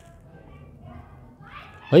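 Faint children's voices in the background, with no one speaking close to the microphone; a man's voice comes back in near the end.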